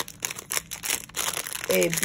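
Clear plastic packaging crinkling and rustling as it is handled, in irregular crackles.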